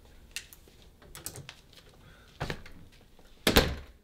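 A front door being handled and shut: a few light knocks and clicks, then a loud thump near the end.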